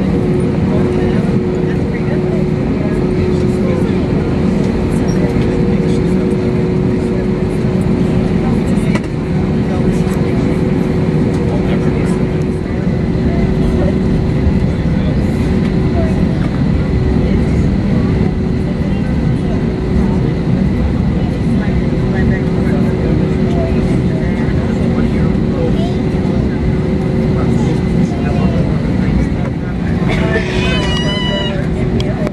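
Airliner cabin noise of an Airbus A321-231 taxiing, heard from a window seat over the wing: a steady rumble with a constant hum from its IAE V2500 engines at low taxi power.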